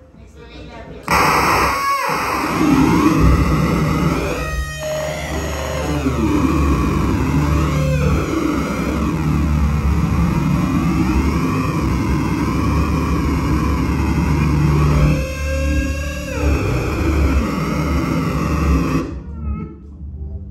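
Amplified banjo played live. After a quiet first second it comes in loud and dense: a deep, steady low drone under sweeping, wavering tones. It cuts off suddenly about a second before the end.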